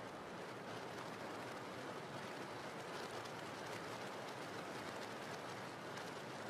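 Steady rain falling: a faint, even hiss with no breaks.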